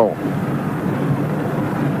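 Steady stadium crowd noise from packed stands at a football match: a continuous din with no single shout or event standing out, heard on an old television broadcast recording.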